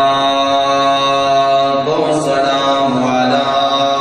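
A man's voice chanting one long, steady held note into a microphone, with a slight shift in the tone about two to three seconds in.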